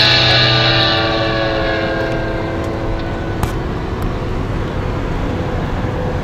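The final guitar chord of a rock song rings out and fades away over the first few seconds. Steady road noise from a moving car remains, with a couple of faint clicks near the middle.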